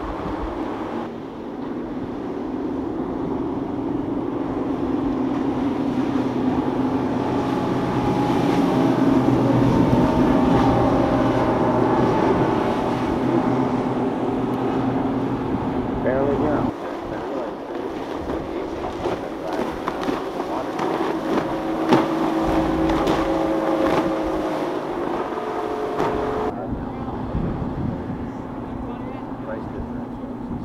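Outboard engines of center-console fishing boats running at speed over the water, a steady engine note that swells toward the middle as a boat passes close, then changes abruptly twice as another boat takes over.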